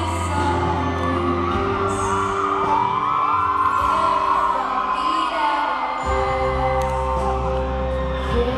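Live concert sound of a slow pop ballad: a woman singing over band accompaniment with sustained notes, and audience whoops and cheers mixed in. The deep bass drops out about a second and a half in and comes back near the end.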